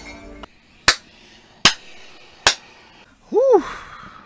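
Episode soundtrack ending: a sustained sound fades out, then three sharp clicks about 0.8 s apart, and a short tone that rises and falls near the end.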